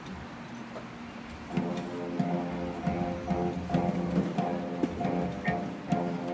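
High school marching band playing on the field. About a second and a half in, the full band comes in louder with sustained chords and sharp, regular accents.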